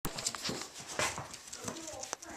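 Jack Russell Terrier puppy's paws pattering and scuffling on the floor as it plays: a quick irregular series of sharp taps, with a louder scuffle about halfway through.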